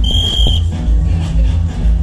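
A single short, high whistle blast of about half a second at the start, typical of a referee's whistle signalling the point just won, over music with a heavy bass beat.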